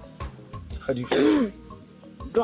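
A woman coughing, choking on food, with one loud strained cough about a second in, over background music with a soft beat.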